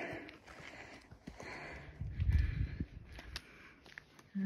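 Footsteps and light scuffs of hikers walking up a rocky, root-covered trail, with a brief low rumble about two seconds in.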